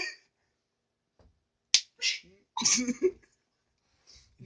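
One sharp smack of an open hand against a face, a little under two seconds in, followed by a few short breathy sounds of stifled laughter.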